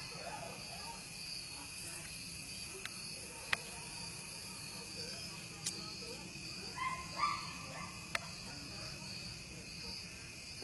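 Steady high-pitched chirring of insects such as crickets, with a few faint sharp clicks scattered through.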